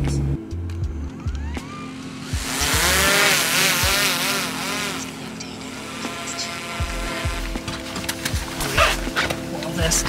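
A small camera drone's propellers whining, swooping up and down in pitch a couple of seconds in, then settling into a steady hum.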